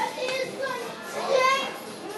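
A young boy's high-pitched voice making short vocal sounds without clear words, loudest about one and a half seconds in.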